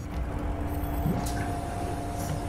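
A horror film's soundtrack ambience: a low rumble with a steady hum over it, coming in suddenly.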